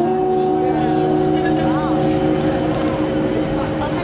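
Guitar chord played through a small amplifier, ringing out and held steadily, over the noise of passing traffic and voices of passers-by.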